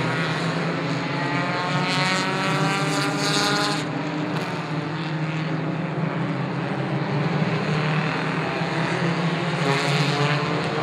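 Four-cylinder stock race cars running on an oval track: one engine climbs steadily in pitch as it accelerates over the first four seconds, over a steady low drone, and another begins to climb near the end.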